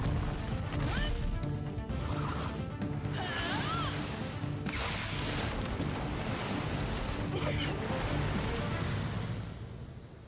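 Animated fight-scene sound effects: a steady rushing noise like wind or surf, with background music underneath, fading near the end.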